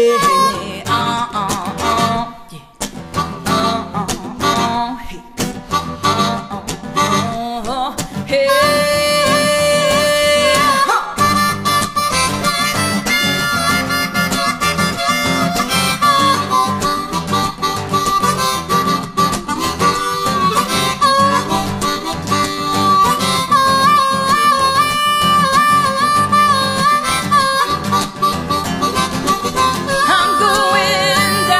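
Harmonica solo over acoustic guitar, with long held notes that step and slide between pitches: an instrumental break in a live folk-blues song.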